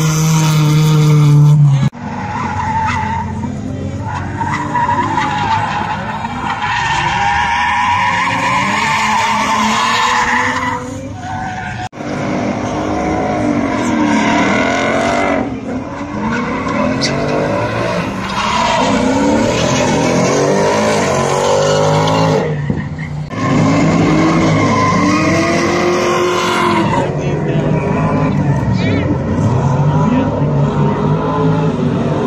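Drift cars sliding sideways with the tyres skidding and screeching, the engines revving up and down again and again as the throttle is worked through the slide. The sound cuts off suddenly about two seconds in and again about twelve seconds in, as one clip gives way to the next.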